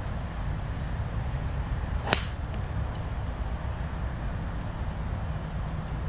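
Srixon Z 785 driver striking a golf ball about two seconds in: one sharp crack with a short ringing tail, over a steady low background rumble.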